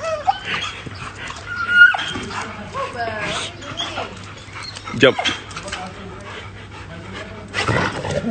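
A dog giving a few short, high-pitched calls that bend up and down in pitch.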